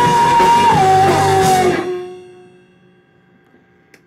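Punk rock band playing live, with drum kit, electric bass and electric guitar; a held high note steps down in pitch partway through. The band stops together about two seconds in, and a last ringing note fades out to near silence.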